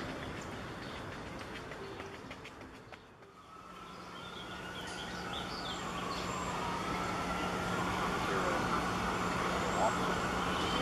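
Distant emergency-vehicle siren wailing, its pitch slowly rising and falling, from about three and a half seconds in. It sounds over a steady low city hum, with a few short bird chirps above it.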